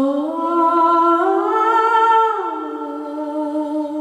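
A woman's solo voice singing long held notes. It climbs in steps to a higher sustained note about a third of the way in, then glides back down and holds a lower note.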